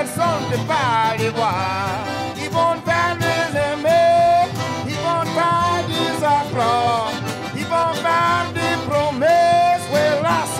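Live acoustic Louisiana French music: fiddle, diatonic button accordion and acoustic guitar playing together, with a man singing in parts of the tune.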